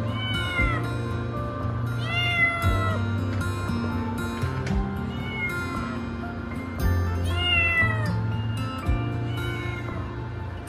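A cat meowing several times in short, arched calls over background music, the clearest meows near the start, about two seconds in and about seven seconds in.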